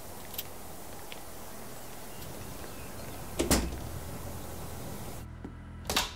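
A door opening and then shutting with one loud knock about halfway through, over a steady background hiss; just before the end, a second, shorter knock of a door handle being worked.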